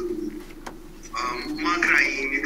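A man's voice holding a drawn-out, low hesitation hum between phrases.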